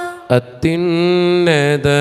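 A man's voice chanting a Malayalam liturgical hymn of the Mass in long held notes, coming in about two-thirds of a second in after the tail of a higher sung note.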